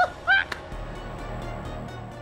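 A man's high-pitched, whooping laugh: two short rising squeals in the first half second. Faint steady background music follows.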